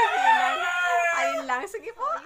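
A rooster crowing once, one long call of about a second and a half with a slight downward slide at its end.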